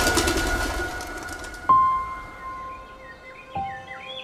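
Cartoon soundtrack: the music thins out, then two bright struck notes ring on, the second about two seconds after the first and lower, while small birds chirp and tweet in short high calls.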